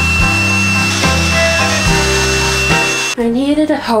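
A power drill running steadily with a high-pitched whine for about three seconds, over background music. The whine stops suddenly and a woman's voice starts near the end.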